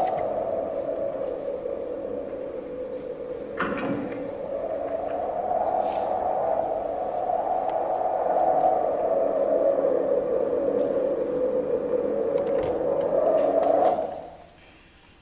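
A sustained droning hum from a film soundtrack, slowly sliding up and down in pitch and swelling and easing in loudness, with a few faint clicks; it cuts off abruptly at the end.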